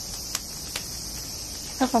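Cicadas shrilling in a steady, high-pitched drone, with two faint clicks in the first second.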